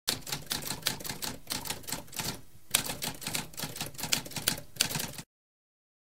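Typewriter sound effect: rapid, irregular keystrokes clattering, with a brief pause about halfway through. The typing stops abruptly just after five seconds.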